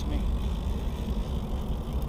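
Wind buffeting the microphone on open water: a low, uneven rumble.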